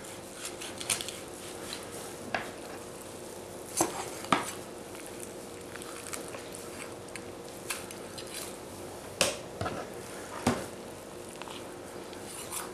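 A kitchen knife cutting a raw pheasant apart at the joints on a plastic cutting board: scattered clicks and knocks of the blade against the board and the bird, the sharpest around four seconds in and twice more near the end, over a faint steady hum.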